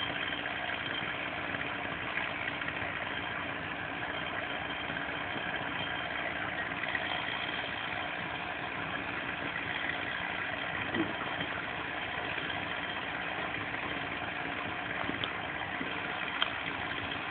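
An engine idling steadily.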